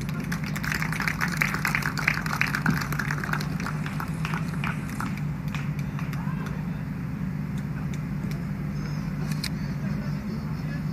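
Scattered hand clapping from a small crowd, dense for the first few seconds and thinning out by about the middle. Under it runs a steady low hum with a murmur of voices.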